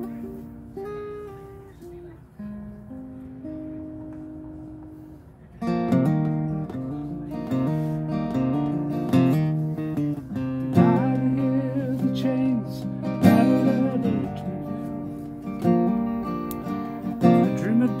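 Solo acoustic guitar playing a song's instrumental introduction. It opens with soft, sparse picked notes, then about five and a half seconds in turns to fuller, louder picked chords.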